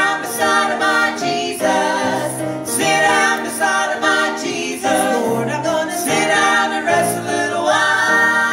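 A gospel vocal trio, two women and a man, singing together into handheld microphones.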